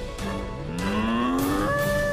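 A cartoon cow mooing: one long call that rises in pitch and then holds a higher note, over background music.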